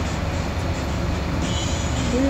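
Inside a city bus: a steady rumble of the engine and road noise through the cabin. A faint high squeal joins about one and a half seconds in.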